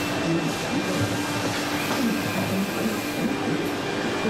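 Gantry transfer robot's carriage driven along its aluminium-frame rails, a steady machine running sound.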